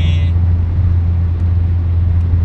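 Steady low drone of a car being driven, heard from inside the cabin.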